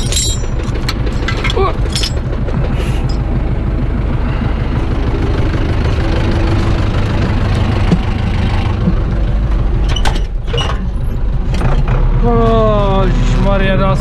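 Zetor tractor's diesel engine idling steadily, with scattered clicks and knocks in the first seconds and a few short falling pitched squeaks near the end.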